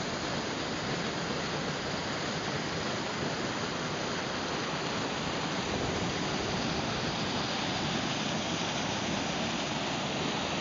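A river rushing steadily over small cascades and through rock pools.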